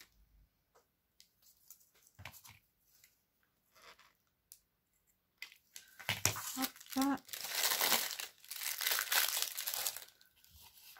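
Light scattered clicks and snips as scissors cut a small flower off a lace trim, then about four seconds of loud crinkling and rustling as tulle, gauze and packaging are handled on the craft mat.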